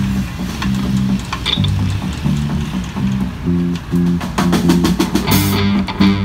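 Live rock trio on electric bass, electric guitar and a small drum kit, playing a riff of repeated low notes. The drums grow busier in the second half, with a cymbal crash near the end.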